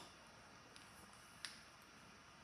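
Near silence as a pastry wheel rolls through a sheet of puff pastry on a silicone mat, broken by two sharp clicks, one at the start and one about a second and a half in, with a fainter tick between them.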